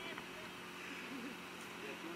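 A person's voice, quiet and low, murmuring and humming without clear words, over a steady hiss.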